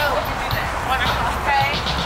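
Voices of people talking on a busy street over music with a thumping bass beat.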